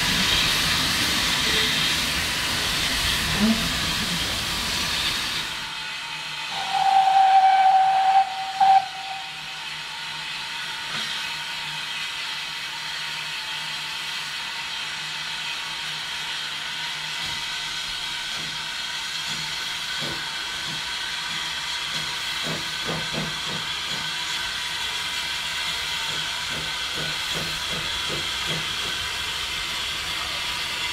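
Steam locomotive, GWR Avonside 0-4-0 saddle tank no.1340 Trojan, hissing steam, with one long steady whistle blast about seven seconds in and a short toot just after. From about twenty seconds, a slow run of exhaust beats comes over the hiss as it moves off with its train.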